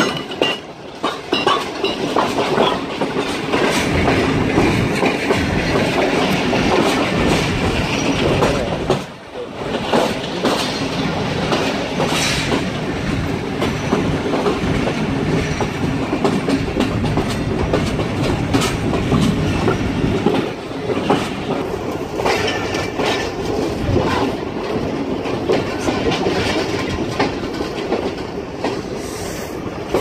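Karakoram Express passenger coach's wheels clattering over rail joints and points as the train pulls into a station, heard from the coach's open doorway. There is a brief lull about nine seconds in.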